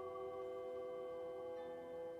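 Soft meditation background music: several steady, overlapping ringing tones held like the drone of singing bowls.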